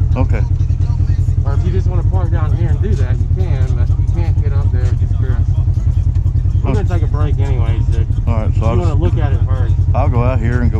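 Polaris RZR side-by-side's engine running at low revs, a steady deep rumble, with people talking over it.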